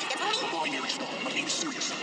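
Cartoon character voices over background music.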